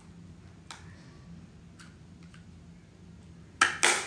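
Makeup items being handled: a few faint taps early on, then a short, loud burst of rustling handling noise near the end, over a faint steady hum.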